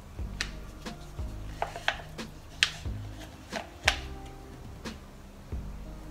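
Flat wooden stick scooping water putty from a plastic cup and packing it into a hole in a wooden door jamb: a string of irregular clicks and taps, the sharpest about two and a half and four seconds in.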